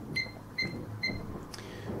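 Sam4S NR-510F cash register key-press beeps: three short high beeps about half a second apart as keys on its flat keypad are pressed to step through the programming menu, with a faint click near the end.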